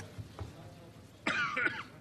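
A person coughing once, a short loud burst about a second and a quarter in that lasts about half a second.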